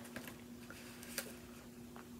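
Quiet room tone with a steady low hum and a few faint small clicks, the clearest about a second in.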